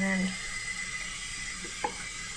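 Tap water running steadily into a sink and over a hedgehog's spines as she is rinsed off, with a single click near the end.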